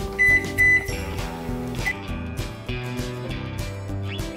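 Electrolux microwave oven's keypad beeping as its buttons are pressed: two loud short beeps in the first second, then a shorter third beep just before two seconds in, over background music.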